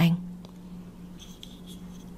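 A woman's narrating voice ends a word, then a pause with a steady low hum. Faint soft rubbing and scratching can be heard about midway, from a hand touching her face close to the microphone.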